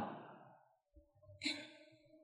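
A pause in a man's talk: mostly quiet, with one short, soft breath at the microphone about one and a half seconds in.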